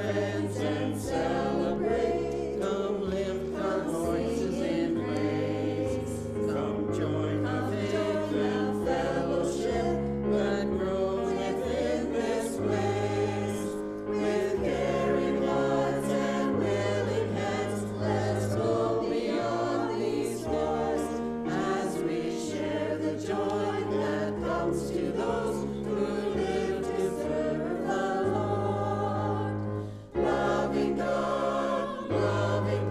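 A small mixed church choir of men and women singing, with steady low notes that change about once a second beneath the voices.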